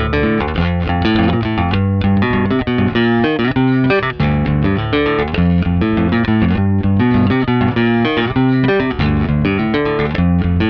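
Electric bass guitar strung with Ernie Ball Cobalt Flatwound strings, played fingerstyle through a Tech 21 VT Bass DI: a steady stream of quick plucked notes, bright for flatwounds.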